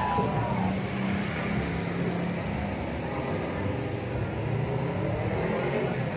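Street traffic noise with motorbike engines running close by, a steady mix of engine hum and street sound.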